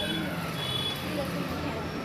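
Steady background noise of street traffic, with a brief faint high beep about half a second in.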